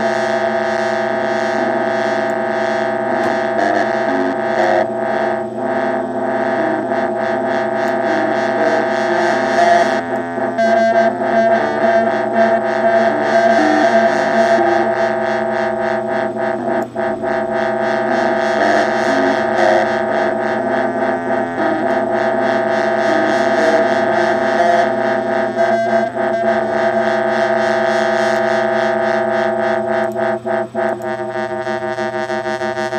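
A Pure Data drone synthesizer (two triangle/square oscillators with LFOs sweeping a resonant filter) played through a Danelectro Honeytone mini amp: a loud, steady layered drone chord with a fast rhythmic pulsing that comes and goes.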